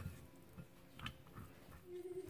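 Faint sounds of a plastic rice paddle mixing cooked rice in a glass bowl, with a couple of light ticks about a second apart.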